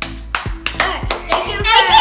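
A quick string of hand claps over background music, then a child's high-pitched voice crying out near the end.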